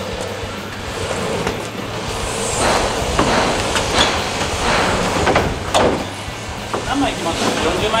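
Particleboard sheets being handled and stacked in a construction hoist cage: scattered knocks and scrapes, several sharp knocks in the second half, over a steady low hum and indistinct voices.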